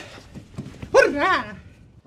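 A person's voice: a short, high-pitched vocal sound about a second in that rises and falls in pitch, with a brief voiced burst at the very start.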